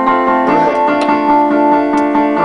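Electronic keyboard playing held chords in a piano-like voice, with the chord changing once or twice.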